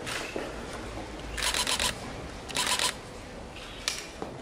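Camera shutter firing in two rapid bursts, each about half a second long, with the clicks coming in quick even succession.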